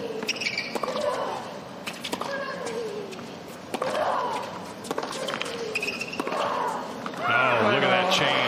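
A doubles tennis rally: the ball is struck back and forth by racquets in a quick exchange of sharp hits, with short effort grunts from the players on their shots. Near the end the crowd breaks into cheering as the point is won.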